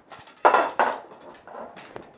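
Loose telescoping leg of a surveying range-pole bipod shifted by hand in its tube, with two quick scraping clatters about half a second in. The leg lock is not holding: the leg is very loose whether the button is pressed or not.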